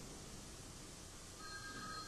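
Faint background hum, then about a second and a half in an electronic desk telephone starts ringing with a steady high tone.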